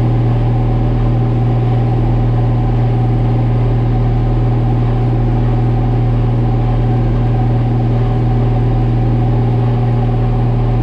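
John Deere tractor engine under steady load, driving a PTO-powered forage harvester that is chopping alfalfa haylage, heard from inside the tractor cab. It is a loud, even drone with a strong low hum that holds one pitch.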